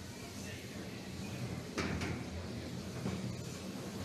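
Steady rushing noise from the combat arena's flame jets firing, with a single sharp knock about two seconds in.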